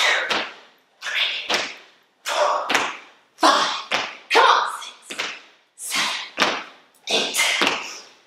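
Squat jumps on a hard studio floor: about seven landings, roughly one a second, each a thud of trainers hitting the floor followed by a hard, breathy exhale.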